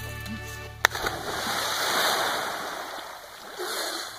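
A person plunging into a pond, with loud splashing and churning water that swells and then fades over about two seconds. A sharp click comes just before the splash, and a second rush of splashing comes near the end.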